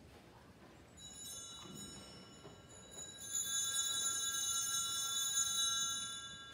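Altar bells: a cluster of small bells shaken in one continuous ring of several high tones. It begins softly about a second in, swells to a loud sustained ring about three seconds in, and fades just after the end. This is the bell ringing that marks the blessing with the Blessed Sacrament at Benediction.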